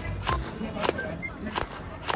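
Toy rifle firing at balloons: three sharp shots, about two-thirds of a second apart.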